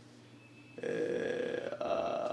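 A man's drawn-out, wordless vocal sound, held at a steady pitch, beginning about a second in after a short pause.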